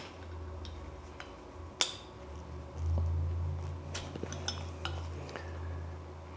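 Small aluminium parts clinking and tapping as gloved hands fit spacers into a square aluminium tube on a metal welding table, with one sharp clink a little under two seconds in. A low steady hum runs underneath, louder in the middle.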